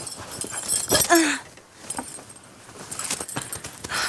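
Rustling and knocking of pillows, bedding and clothes being pulled about and rummaged through by hand, with irregular clicks. About a second in there is a short pitched sound that falls slightly in pitch.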